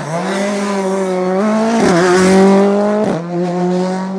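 Ford Fiesta rally car engine pulling hard out of a tight bend with a loud, steady high note. The note dips briefly twice, about two seconds and three seconds in, as the driver changes up a gear.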